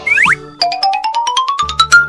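Cartoon-style sound effect over children's background music: a quick upward swoop, then a fast run of short plinking notes, about ten a second, climbing steadily in pitch.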